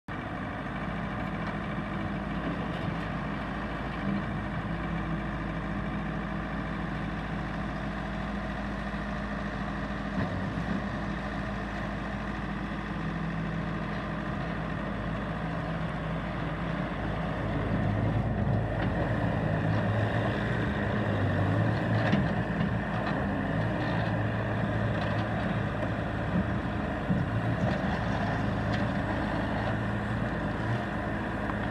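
Bobcat skid-steer loader's diesel engine running steadily, then louder from about 18 seconds in as the machine moves and turns.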